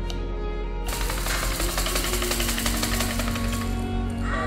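A bead-filled plastic rattle toy shaken hard in a fast, dense rattle. It starts about a second in and stops shortly before the end, over background music.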